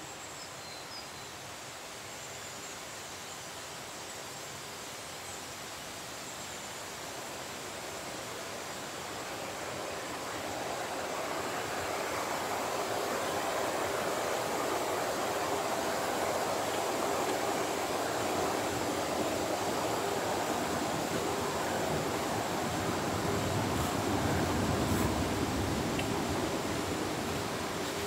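Mountain stream rushing over rocks in a gorge: a steady rush of water that grows louder over the first half and stays strong.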